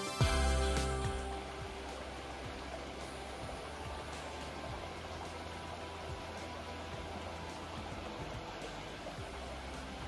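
A shallow stream flowing over rocks, a steady even rush of water. Background music fades out in the first second or two.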